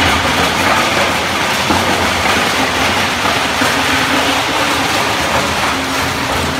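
Industrial shredder chewing up a plastic pallet: a loud, continuous crunching and clattering of plastic being torn apart by the cutter shafts over the machine's running drive.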